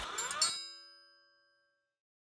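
Electronic channel-logo sting: a rushing swoosh with rising sweeps that ends in a chord of bright chimes, ringing out and fading away within about a second and a half.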